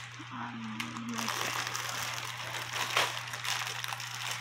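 Clear plastic bags crinkling and rustling as bagged clothes are handled and shifted in a cardboard box, with a louder crackle about three seconds in. A short low hum of a voice comes in the first second.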